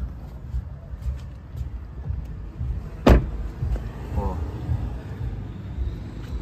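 A Jeep Compass rear door shutting with a single loud thump about three seconds in, over steady rumbling and rustling from the camera being handled.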